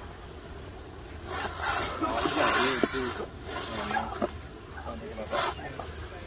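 Water hissing from a garden hose spray nozzle onto a man's head and hands as pepper spray is rinsed off his face. The hiss swells about a second in and runs for about two seconds, with a shorter burst near the end, and there are short vocal sounds from him.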